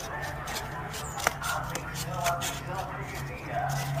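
Scissors snipping through a molded cardboard egg tray: irregular short cuts and crunches, with one sharper snap about a second in.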